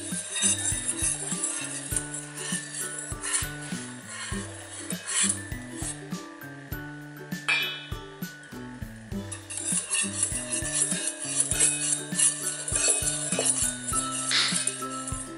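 Wire whisk beating egg yolk in a stainless steel bowl, its wires clinking and scraping rapidly against the metal sides, busiest in the second half. Background music plays underneath.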